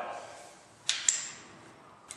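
A sharp metallic clink about a second in, followed by a lighter one and a short high ring: steel locking pliers handled and set down on a steel workbench.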